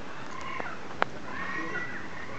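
Animal calls: a few short, held high notes, some overlapping, with a single sharp click about halfway through.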